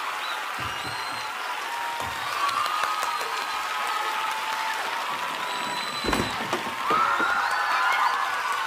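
Theatre audience applauding and cheering, with scattered whoops over the clapping. There is a single low thump about six seconds in.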